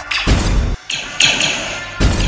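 Battle sound effects over orchestral film score: a heavy thump about a quarter second in, then a sharp burst just after a second in.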